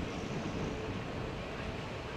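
Steady rush of wind on the microphone and road noise from a bicycle riding behind slow traffic on a wet street.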